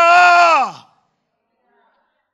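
A man's loud, drawn-out vocal cry, held on one pitch and then sliding down and fading out within the first second.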